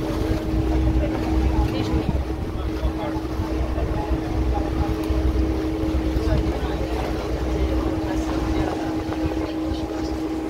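A boat's engine running steadily underway on a canal, a low rumble with a constant hum. Scattered voices chatter in the background.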